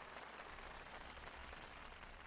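Faint, steady background hiss: the room tone of a large hall with a seated audience.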